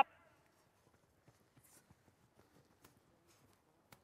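Near silence: faint open-air ambience with a few scattered light ticks.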